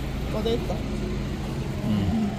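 Steady low rumble of street traffic, with a faint voice briefly about half a second in.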